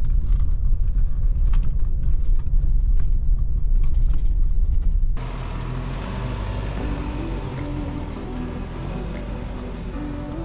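Nissan Navara NP300 ute heard from inside the cab on a rough dirt track: a heavy low rumble with frequent knocks and rattles as it bounces over the ruts. About five seconds in it cuts suddenly to quieter background music.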